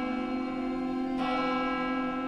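A church bell ringing, struck again about a second in, its tones ringing on.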